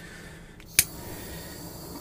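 One sharp click not quite a second in, over low steady room noise, as hands work plastiline into a sculpted form on a wooden board.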